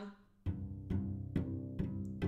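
Cello played with short, separate bow strokes on one low note, about two strokes a second, each with a crisp attack: a spiccato bowing demonstration. The strokes begin about half a second in.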